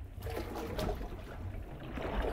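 Water sloshing and washing through a tsunami demonstration wave tank as a generated wave runs up the model shore; a steady, fairly quiet wash of moving water.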